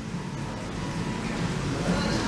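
Steady low hum and hiss of a shop's background noise, with no single distinct event standing out.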